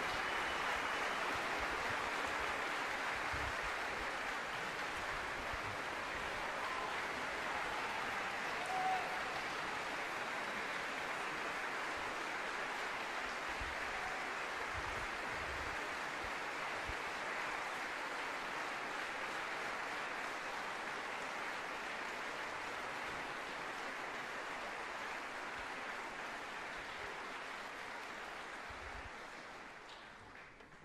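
Concert hall audience applauding steadily after a choral and orchestral performance, the clapping thinning and dying away over the last few seconds.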